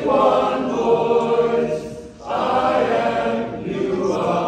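Men's barbershop chorus singing a cappella, holding sustained chords. The sound dips briefly about two seconds in, then the full chorus comes back in.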